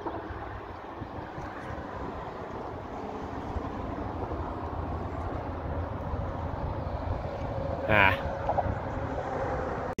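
Wind buffeting a phone's microphone: a steady low rumble that grows slowly louder.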